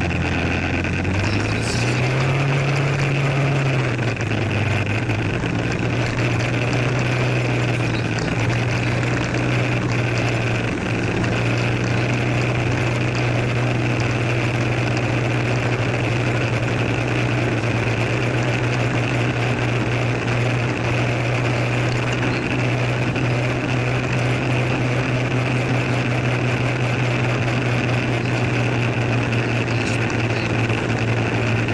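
Scooter engine running while riding, a steady buzz that rises in pitch about a second in as it speeds up, eases back a few seconds later, then holds steady at cruising speed.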